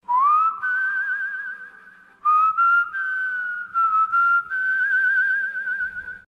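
A person whistling a slow tune over a faint low hum. Long held notes slide up at the start and waver with vibrato, with a short break about two seconds in.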